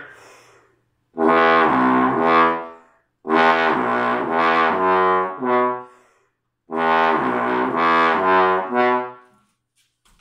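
Trombone playing three short slurred phrases of low notes, each a few notes stepping in pitch, with brief breaths between them. A low B is slipped in as a false tone, passed off as a short note between other notes.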